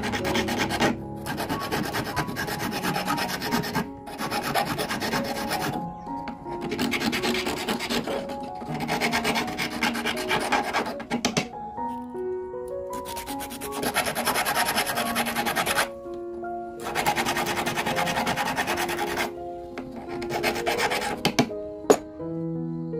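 Flat metal hand file rasping on the edge of a copper ring, in bouts of rapid back-and-forth strokes a few seconds long with short pauses between them.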